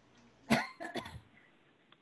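A man coughing briefly: a few quick, sharp bursts close together.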